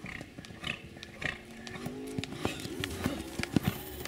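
Hoofbeats of a horse moving over a sand arena: soft, irregular thuds. From about halfway through, a pitched sound, a voice or music, runs under them.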